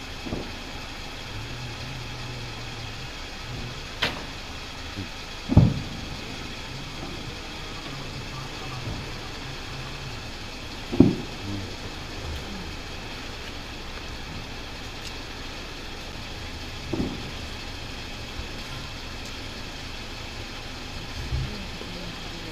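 Distant fireworks going off as low booms: two loud ones, about a quarter and about halfway through, and fainter ones later, over a steady low background noise.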